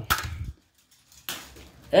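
Small plastic toy monster truck being run by hand and landing on a dirt and plastic-track course: a sharp knock near the start, a brief gap, then a second, rattling knock about a second and a quarter in.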